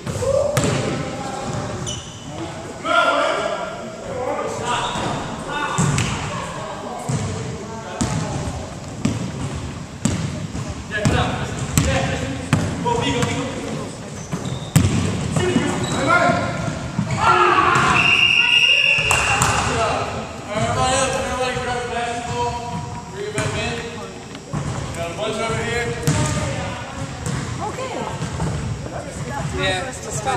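Basketballs bouncing on a hardwood gym floor, each bounce echoing in the large hall, under indistinct talking throughout. The loudest stretch comes a little past halfway: a brief high squeak over the voices.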